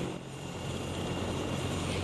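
Air ambulance helicopter with its main rotor turning: a steady low hum of several tones under a rushing hiss, growing slightly louder.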